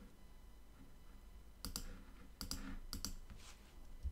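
Faint computer mouse clicks, several in quick succession, from about one and a half to three seconds in, as word tiles are picked on screen.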